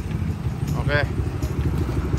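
Motorcycle engine idling, a steady low rumble.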